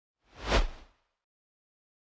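A single whoosh sound effect, swelling up and dying away in about half a second.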